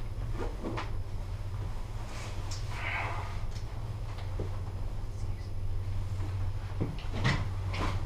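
Ride noise inside a Leitner 3S gondola cabin going downhill: a steady low hum with scattered knocks and creaks from the cabin, the loudest about seven seconds in.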